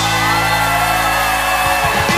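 Live country-rock band playing an instrumental passage between verses: steady sustained chords underneath, with one long held high note bending gently over them.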